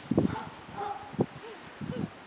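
A baby making a few brief, soft vocal sounds, with faint crunches of snow under crawling hands and knees.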